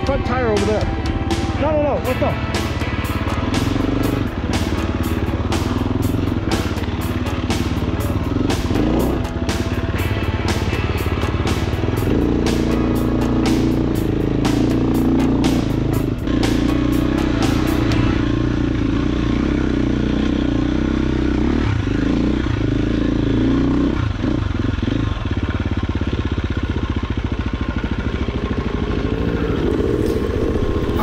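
KTM dirt bike engine running at low, fairly steady revs. A fast, even ticking runs over it from about two seconds in and stops about eighteen seconds in.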